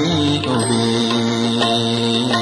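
Slow devotional music: a voice singing drawn-out notes that waver and glide in pitch, over a steady lower tone.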